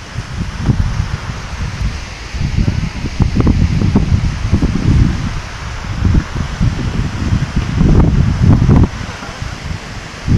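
Wind buffeting the microphone in uneven gusts, over a steady rushing hiss from a fast mountain stream.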